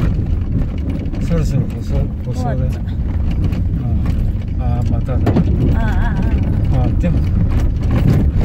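Car driving on a rough unpaved gravel track, a steady low rumble of engine and tyres on the dirt heard from inside the cabin, with voices talking over it at times.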